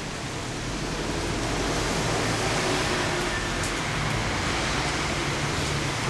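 Steady rushing noise with a faint low hum, swelling slightly over the first two seconds and then holding level.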